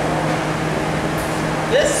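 Fire truck running, a steady mechanical hum with a low constant tone under an even rush of noise.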